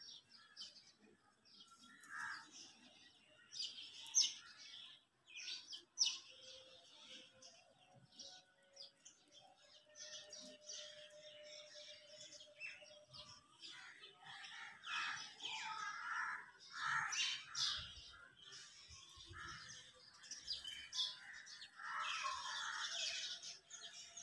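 Birds chirping and calling: many short, scattered chirps, fairly faint, with a busier stretch in the second half.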